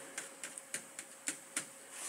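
Faint room tone with a few light, scattered clicks.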